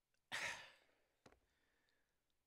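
A man's audible breath, a short sigh, into a close microphone, fading out over about half a second. It is followed by a small mouth click.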